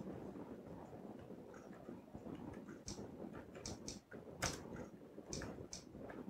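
Faint typing: about seven short, irregularly spaced key clicks in the second half, as a few characters are typed, over low room noise.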